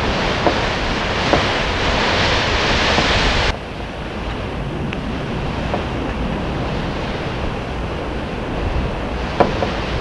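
Wind buffeting a camcorder microphone: a loud, rushing roar that drops suddenly about a third of the way in and then carries on more quietly.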